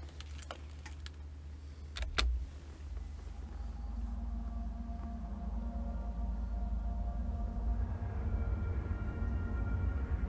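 Two sharp clicks about half a second and two seconds in, from headphones being handled, over a steady low wind rumble. From about four seconds in, a soft music intro of held, slowly building tones comes in over the wind.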